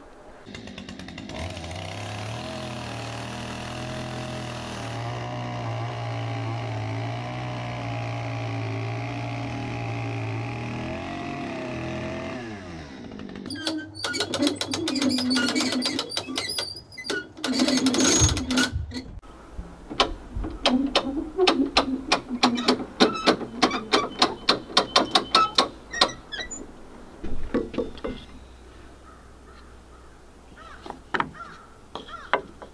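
A steady humming drone falls in pitch and dies away about twelve seconds in. Then a two-speed hand winch ratchets as a hanging cabin log is lowered onto the wall: scattered clicks at first, then a fast even run of clicks for several seconds.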